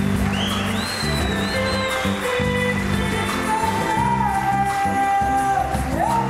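Live band music with electric guitars over a rhythmic bass line. A high, sliding melody runs near the start, and a long held note bends in the second half.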